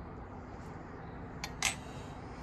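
Faint steady background hiss, then two quick light clicks about one and a half seconds in: a fork tapping as pickled red onions are placed on burgers.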